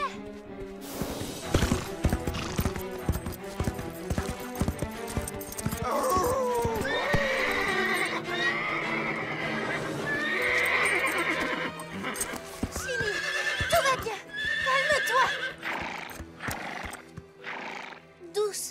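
A horse whinnying over and over, with hoofbeats in the first few seconds, over background music.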